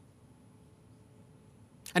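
Near silence: faint room tone in a pause between sentences, with a man's voice starting again near the end.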